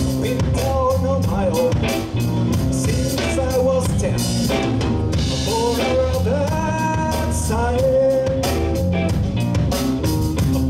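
Live blues band playing: an electric guitar lead line with bent notes over bass guitar and a drum kit.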